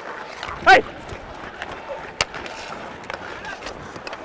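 Ice hockey play heard through a player's body mic: skate blades scraping the ice over a steady arena din, with one sharp crack of a hockey stick about two seconds in.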